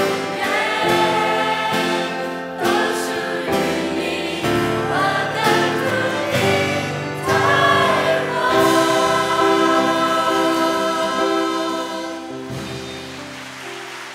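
A mixed choir of men's and women's voices sings the closing line of a Mandarin song in harmony. From about eight seconds in it holds a long final chord that fades away near the end.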